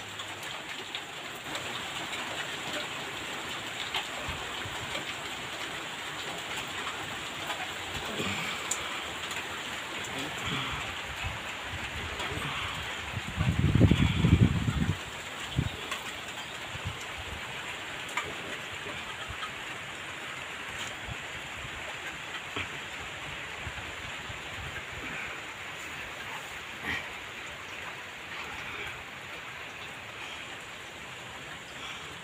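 Steady heavy rain falling on a paved yard, an even hiss, with a few faint bird calls. About halfway through, a louder low rumble lasts a couple of seconds.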